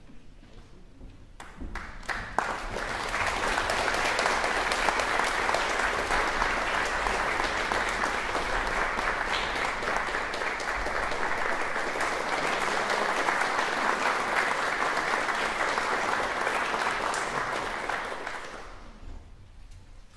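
Audience applauding to welcome the singers onto the stage. The clapping builds quickly about two seconds in, holds steady, and dies away near the end.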